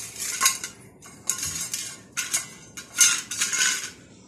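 Stainless steel bowl scraping and clattering on a stone-chip floor as kittens paw and push it, in four rough scraping spells, the loudest about three seconds in.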